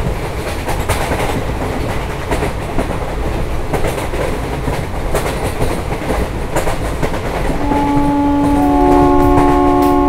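Passenger train running on the rails, a steady rumble with irregular clickety-clack; about two and a half seconds before the end a long multi-tone train horn comes in and holds.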